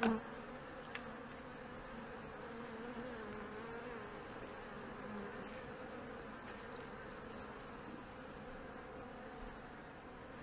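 Honey bees buzzing around an open hive, a steady hum whose pitch wavers slightly.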